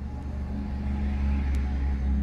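A low steady rumble that slowly grows a little louder, with a single faint click about one and a half seconds in.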